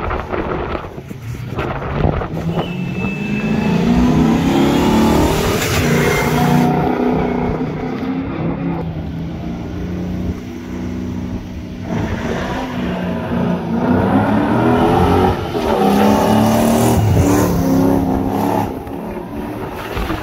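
Rally trucks passing at speed one after another, engines working hard. The first truck's engine note rises as it accelerates past from about two seconds in, and a second truck follows from about twelve seconds in.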